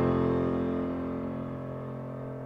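Background piano music: a chord struck just before, ringing on and slowly fading.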